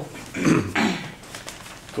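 Newspaper pages rustling as they are turned, in one short burst about half a second in, with a brief throaty vocal sound mixed into it.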